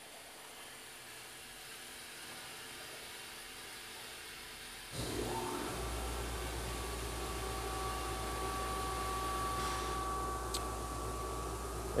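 Steady machine hiss from a SawJet stone-cutting machine while the water level in its cutting tank is raised. About five seconds in, a louder low hum with a couple of steady tones comes in and holds.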